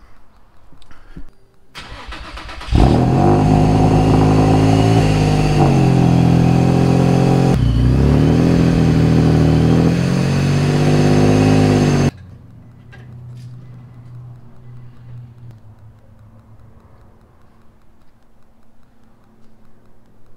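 Infiniti G35 coupe's V6 engine starting and running loud, its revs rising and falling for about nine seconds before the sound stops abruptly; a fainter steady engine hum follows.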